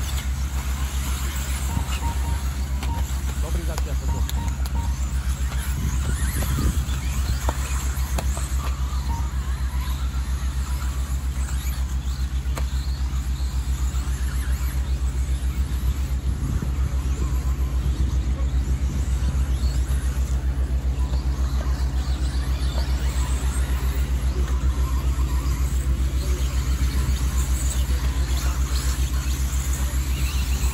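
4WD RC buggies racing on a dirt track, their motors and tyres heard as a faint scrabbling whine over a strong steady low hum.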